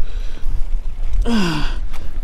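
A man's sigh: one short, breathy voiced exhale falling in pitch, a little past halfway through. Under it runs a steady low rumble of wind on the microphone.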